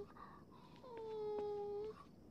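A Saint Bernard dog whimpering: one long, high whine starting about a second in, dipping slightly in pitch and then holding for about a second.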